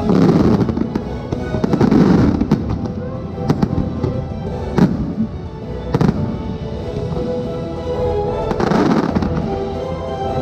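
A fireworks display: aerial shells and sparking fountains going off in a dense, continuous crackle, with several sharp bangs through the middle. The show's orchestral soundtrack plays underneath.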